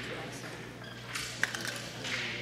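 A crokinole shot: a wooden disc is flicked across the wooden board, with a single sharp click about one and a half seconds in, over low hall background noise.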